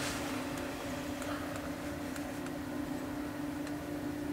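Steady hum of an electric fan: one constant low tone over a soft hiss, with a few faint ticks.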